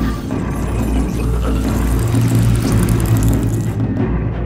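Dark film score, a low sustained rumbling bass under dense music, with no speech; the upper sounds drop away near the end.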